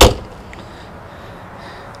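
The hinged access hatch lid on a boat's center console shut once, a single sharp slam that dies away quickly.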